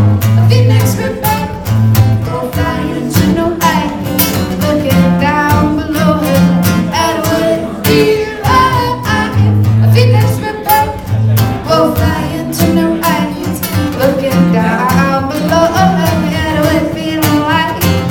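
Live song: singing voices with two acoustic guitars strummed steadily.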